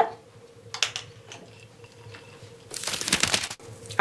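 Paintbrushes clicking and rattling against each other in an easel tray as one is picked out. A few light clicks come about a second in, then a short burst of clatter near the end.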